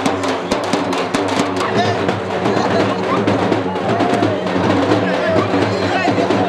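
Festive music with fast drumming. The rapid drum strokes are densest over the first second and a half, then the music runs on steadily under a crowd's voices.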